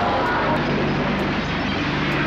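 Glass window panes smashing as a body crashes through them: a dense, loud crashing noise with scattered sharp high ticks of breaking glass, over a steady low drone.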